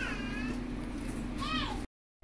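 Two short high-pitched mewing cries over a steady background hum: one falls in pitch at the start, and the other rises and falls about a second and a half in. The audio then drops out completely for a moment near the end.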